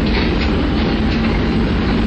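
Diesel locomotive rolling slowly past at close range as a train pulls in, making a steady, loud rumble of engine and wheels.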